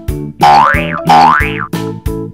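Children's background music with a steady keyboard beat, with a cartoon sound effect played twice in quick succession over it: a tone that slides up and then back down in pitch.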